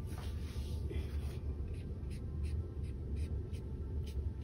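Paintbrush strokes on a painting, a series of short soft scratches that come about three a second in the second half, over a steady low hum.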